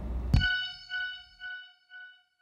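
A low rumble cuts off with a sharp hit about a third of a second in, and an outro chime sound effect rings out, its echoes repeating about twice a second and fading away.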